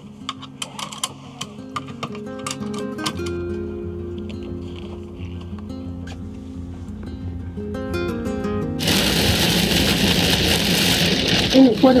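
Background music with a few sharp clicks, such as seatbelt buckles. About nine seconds in, it gives way abruptly to the loud, steady hiss of heavy rain and wet road noise in a moving van.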